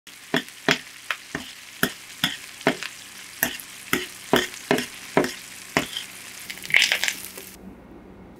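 Butter sizzling in a metal pan as a spoon bastes two beef tenderloin steaks, the spoon clinking against the pan about twice a second with a quick flurry of scrapes near the end. The sizzle cuts off suddenly just before the end.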